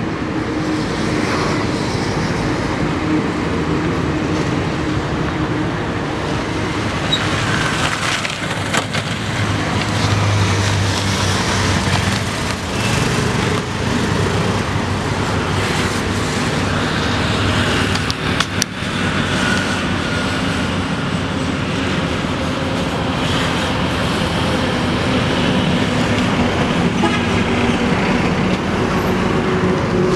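Steady road traffic noise, with motor vehicles running and passing close by.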